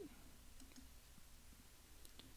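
Near silence: room tone, with a faint computer mouse click about half a second in.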